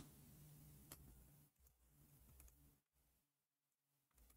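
Near silence: faint room tone with a few soft, isolated clicks, one about a second in and a couple more, fainter, near the middle.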